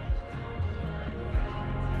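Dramatic background score: low sustained notes with two soft low pulses, about a second and a half apart.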